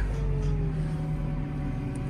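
JCB telehandler's diesel engine running steadily, heard from inside the cab, with a faint pitched note that eases slightly downward.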